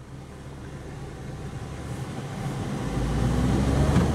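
2009 Smart Fortwo Passion's 70-horsepower three-cylinder engine pulling the car away under acceleration, heard from inside the cabin, the engine note growing steadily louder and rising in pitch.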